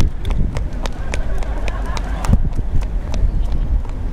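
Wind rumbling on the microphone over a scatter of quick footsteps on tarmac, with faint voices in the background.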